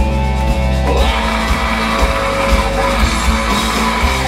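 Rock band playing live at full volume: distorted electric guitars, bass and drums, with the singer's lead vocal over them. The sound thickens about a second in.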